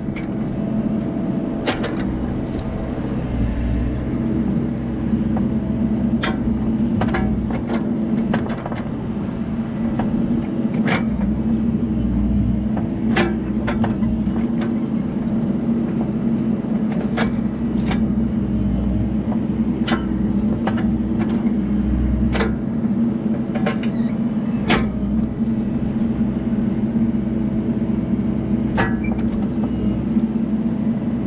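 Mini excavator's diesel engine running steadily, its deep rumble swelling every few seconds as the hydraulics take load, with scattered sharp knocks and clanks from the bucket and thumb handling logs.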